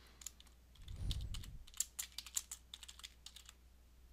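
Typing on a computer keyboard: a faint, irregular run of keystrokes as a name is typed in.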